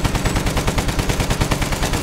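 Rapid machine-gun fire sound effect: a sustained, even burst of about a dozen shots a second.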